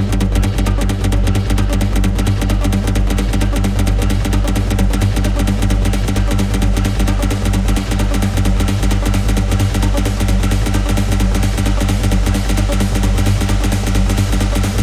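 Hard industrial techno playing loud and steady: a heavy, unbroken bass under a fast, even pulse.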